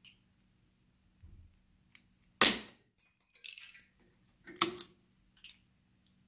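Metal clacks and a ringing clink from a Bridgeport milling machine's quill feed trip mechanism being tested after adjustment. The loudest clack comes about midway, a second one near the end, and the feed kicks out as it should.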